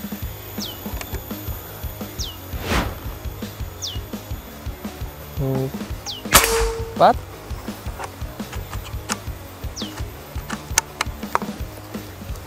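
A single shot from a PCP Morgan Classic air rifle charged to 3000 psi: one sharp report about six seconds in, over background music with a steady beat.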